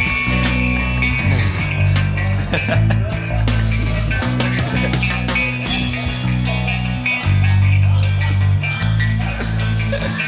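Instrumental psychedelic rock: guitars over sustained bass guitar notes and a drum kit hitting steadily, with no vocals.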